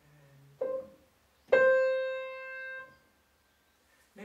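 Grand piano played in the upper-middle register: one soft note, then about a second later a loud note that rings for over a second before the key is released and the damper cuts it off. It is a small sound followed by a big singing one.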